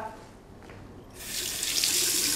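Water running from a bathroom tap into a washbasin, starting about a second in as a steady hiss.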